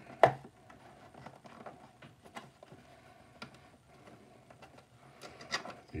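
A small cardboard box being handled and its tucked end flap worked open with the fingers: a sharp tap near the start, then faint scattered scrapes and clicks of cardboard.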